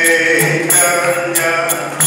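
Devotional kirtan: a man's voice chanting the holy names (harinama) in a sung melody through a microphone, with small hand cymbals (kartals) struck in a steady beat about twice a second.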